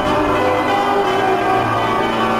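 Intro music sting of bell-like chimes, many tones ringing and sustaining together after a low rumble drops away at the start.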